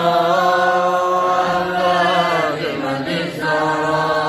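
Men's voices chanting in long, drawn-out held notes. There is a short break about two and a half seconds in, then the next long note begins.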